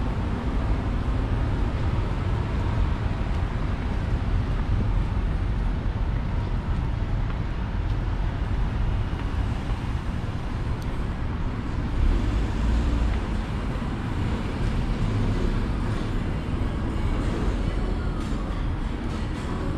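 Steady city street ambience: a continuous low rumble of road traffic, with a brief louder swell about twelve seconds in.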